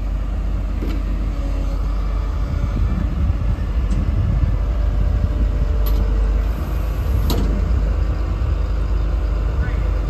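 Heavy diesel equipment engine running steadily, a deep low rumble, with a few sharp clicks or knocks: one about a second in and others around four, six and seven seconds.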